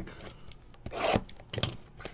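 Cardboard trading-card box handled as a foil pack is pulled out of it: a rubbing scrape about a second in, then a few sharp crinkles.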